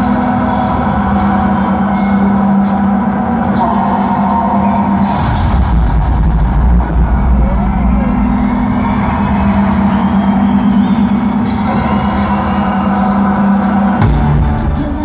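Live pop music from an arena sound system, picked up loud on a phone: a held synth note over a low drone, broken about five seconds in by a deep bass swell and a short crash before the held note returns.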